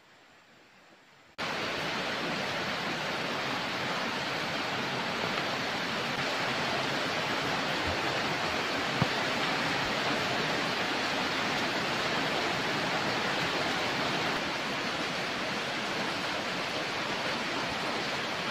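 A loud, steady rushing noise with no pitch, like heavy rain or running water, starting abruptly about a second and a half in, with one short knock about nine seconds in.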